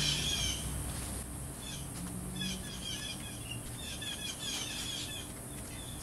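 Songbirds chirping in the background, many short high calls repeated throughout.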